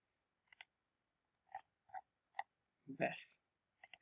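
Computer mouse clicking: a sharp press-and-release click about half a second in, three softer taps in the middle, and another double click near the end. A brief vocal sound comes around three seconds in.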